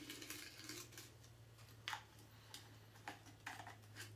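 Faint handling of a box cutter and a plastic spice bag: soft rustling and a few sharp clicks, the loudest about two seconds in, over a steady low hum.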